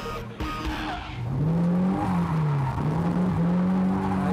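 Nissan Silvia drift car's engine revving hard under power, starting about a second in: the pitch climbs, dips once, then climbs again and holds high.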